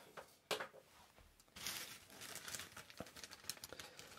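Faint crinkling of a plastic zip-top bag being handled, starting about a second and a half in, after a single light click about half a second in.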